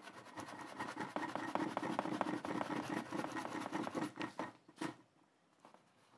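Tissue rubbed back and forth over oil pastel on paper, blending the colours: a quick run of dry, scratchy rubbing strokes that dies away about four to five seconds in.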